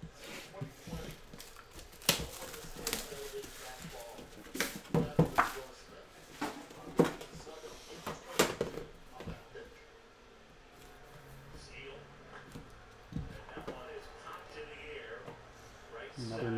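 Plastic shrink wrap being slit and torn off a trading-card box, with crinkling and several sharp clicks and knocks as the box and its packaging are handled.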